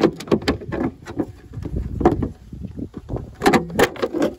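Plastic tail-light housing of a Ford Focus being rocked and pulled against the car body to work it loose from its clips: a rapid, irregular series of knocks, clicks and creaks, loudest near the end.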